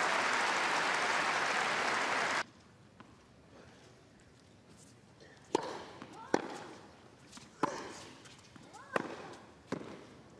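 Stadium crowd applauding after a point, cut off suddenly a couple of seconds in. Then a tennis rally on a hard court: five sharp racket strikes on the ball, roughly a second apart.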